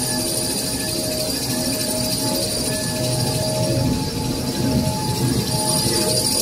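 XY TQ B 500 glue-laminated kitchen towel maxi roll paper machine running at speed: a steady mechanical clatter and rumble with a constant high whine over it.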